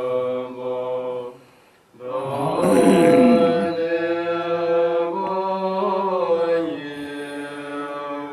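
Tibetan Buddhist monks chanting a prayer together in long held notes, breaking off briefly for breath about a second and a half in before the chant resumes.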